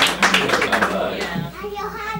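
Clapping that fades away over the first second or so, with a person's voice starting to speak as it dies down.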